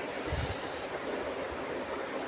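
Steady background hiss of the room, with one soft low bump about a third of a second in, typical of a phone being handled while filming.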